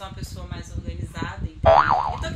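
A woman's voice, then about a second and a half in a short, loud springy 'boing' whose pitch wavers up and down.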